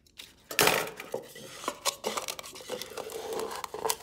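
Styrofoam block being pushed and worked into a small metal pail for a tight pressure fit, scraping and knocking against the pail's sides. There is a louder scrape about half a second in, then scattered scratchy rubbing.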